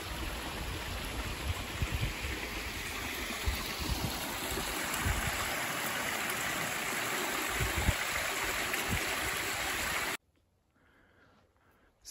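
Small mountain stream running over rocks, a steady, even rush of water that cuts off suddenly about ten seconds in.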